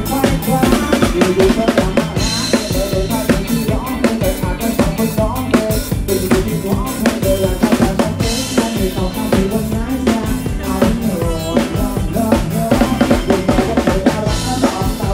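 Live band playing upbeat Thai ramwong dance music, the drum kit to the fore with kick and snare keeping a steady, fast beat under keyboard and brass.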